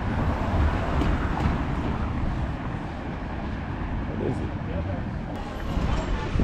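Outdoor street ambience: a steady low rumble with faint distant voices.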